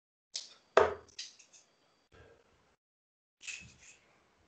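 A handful of sharp knocks and clicks with silence between them. The loudest is a heavy thud about a second in, followed by lighter clicks and two softer knocks later on.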